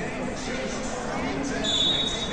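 Voices and crowd chatter echoing through a large hall at a wrestling tournament. Near the end, a referee's whistle gives one steady, high blast.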